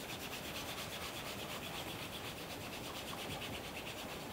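Damp cotton chamois rubbing in small circles over the waxed leather toe of a shoe, a soft, steady rub. It is buffing off the clouded coat of hard mirror-gloss wax to a light shine, before the next layer goes on.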